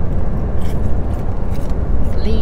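Steady road and engine noise inside a Ford's cabin while it drives at highway speed, a constant low rumble.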